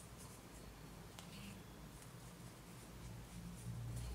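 Faint handling sounds of soft yarn as hands roll a crocheted flower into shape, over a low steady hum.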